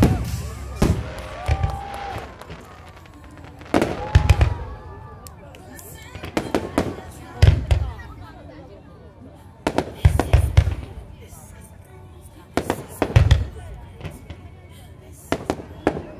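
Firework shells bursting in the sky: clusters of deep, echoing booms about every three seconds, each cluster two or three bangs close together.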